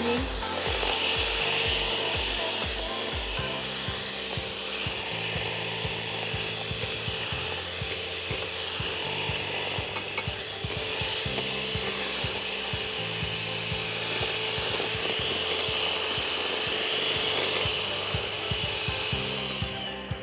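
Electric hand mixer running steadily, its twin wire beaters whisking eggs and sugar in a glass bowl, then switching off near the end.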